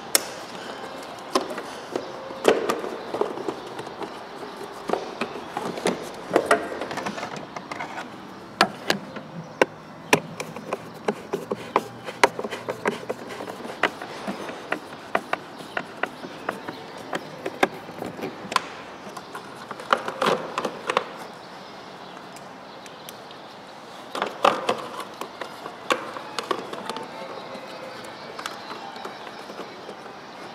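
Irregular plastic clicks, taps and knocks from hand work on a car's heater blower motor and its plastic housing, as the parts are refitted with a screwdriver. The clatter comes in busier clusters a few seconds apart.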